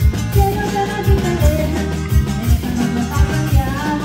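Gabbanelli button accordion playing a melody over a live band's bass and drum beat, in Latin American regional style.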